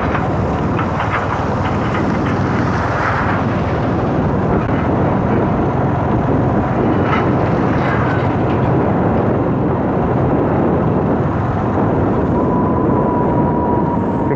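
Steady road and wind noise of a moving vehicle, heard from on board, with no sudden events. A faint thin steady tone comes in near the end.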